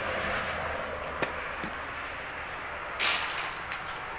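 Footsteps and handling rustle from someone walking across a debris-strewn floor. There is a sharp click about a second in and a short scuff near the end.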